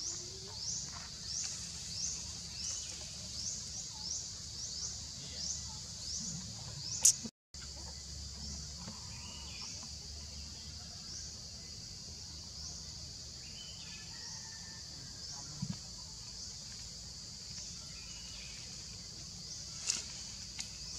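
Steady high-pitched insect chorus in woodland, a short rising call repeating about one and a half times a second. About seven seconds in comes a sharp click and a brief dropout, after which the calls come more sparsely.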